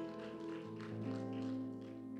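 Soft background music of sustained, organ-like keyboard chords, moving to a new chord with a low bass note entering a little after half a second in.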